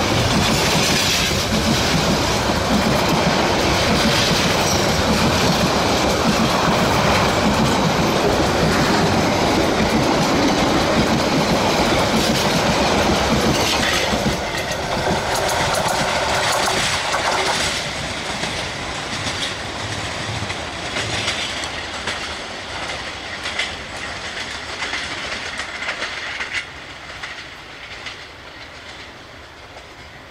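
Metre-gauge passenger train running past at speed, its coach wheels clattering over the rail joints. The sound drops about halfway through and fades further near the end as the train draws away.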